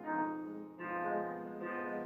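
Grand piano playing the accompaniment of a French art song, three chords or notes struck in turn, each ringing on.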